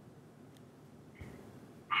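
Quiet pause with only faint background hiss, a soft click a little past the middle, then a girl's voice starting to answer at the very end.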